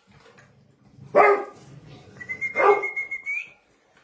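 A dog barking twice, about a second and a half apart, with a thin high whine held through the second bark and rising at its end.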